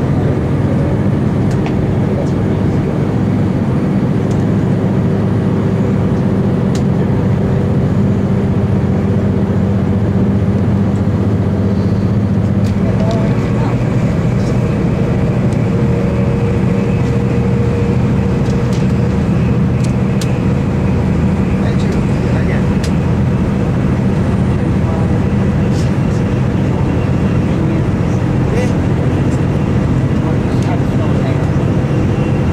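Cabin noise aboard a V/Line VLocity diesel multiple unit running at speed: a steady drone from the underfloor diesel engine mixed with wheel-on-rail rumble. A faint higher whine joins about halfway through and holds.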